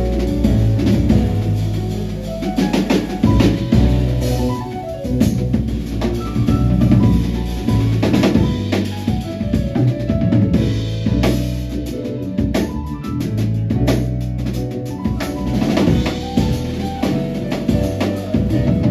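Jazz piano trio playing live: grand piano, electric bass guitar and drum kit together, with busy drumming on snare, bass drum and cymbals under the piano and walking bass.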